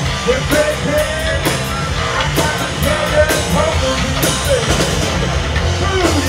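Live rock band playing loud: electric guitars and bass guitar over a drum kit, with cymbal crashes about once a second.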